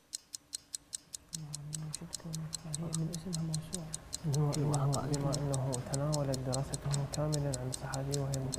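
A clock ticking steadily and rapidly, a quiz-show countdown timer sound effect marking the contestants' thinking time. Under it, from about a second in, men's voices confer quietly and grow louder about halfway through.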